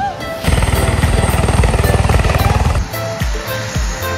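A helicopter lifting off: rapid rotor pulsing with a thin high turbine whine, loud for about two seconds over background music. Near the end, the music with a steady beat takes over.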